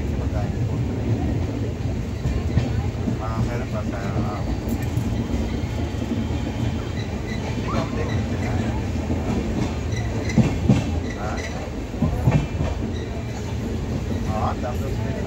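Passenger train running along the track, heard from inside the coach through an open barred window: a steady rumble of wheels on rails. Two pairs of louder knocks come near the end.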